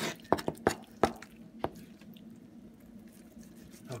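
Long knife slicing through tender, juicy smoked brisket on a cutting board: about five sharp clicks in the first two seconds as the blade meets the board, then quieter cutting.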